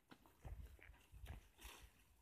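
Faint, irregular footsteps on dry field soil and crop stubble: light crunches and rustles with a few low thumps, and a short rustle near the end.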